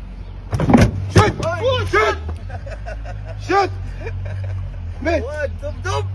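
Sports car engine idling with a steady low hum; about half a second in, a loud clunk and rattle as the car door is pulled open.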